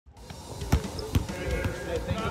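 Basketballs bouncing on a hardwood court, about four sharp bounces with the two loudest near the middle.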